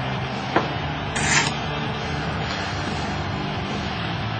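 A laced black corset being handled: rubbing and rustling of its fabric and laces, with a sharp click about half a second in and a short rasping swish just after a second, over a low steady hum.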